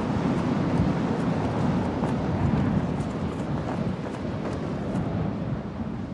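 Steady rush of wind and road noise from a moving car, heard with the window open, with a low rumble underneath. It eases off near the end.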